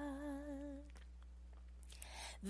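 A singing voice holds one note with a wavering pitch and fades out within the first second, followed by near silence.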